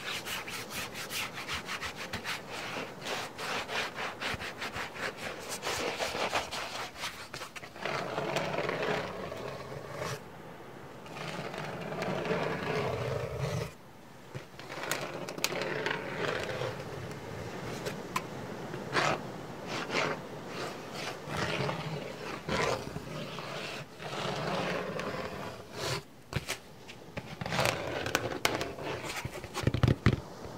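ASMR scratching and rubbing sounds: fast, dense scratching for the first several seconds, then slower rubbing strokes with short pauses and a few sharp taps.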